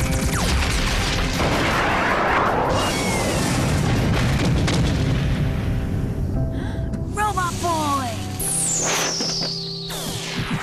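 Cartoon battle sound effects over an orchestral score: laser blasts and a long explosion rumble, followed near the end by short falling chirps and then a long falling whistle.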